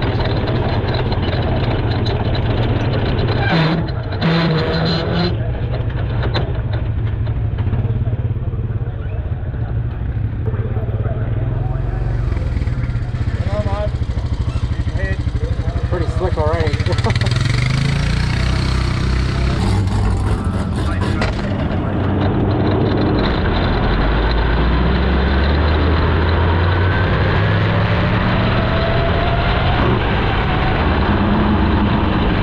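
A 360 sprint car's V8 engine running at low speed as the car rolls around a dirt oval, heard from the cockpit. The engine note rises and falls with the throttle and runs louder and steadier in the last third.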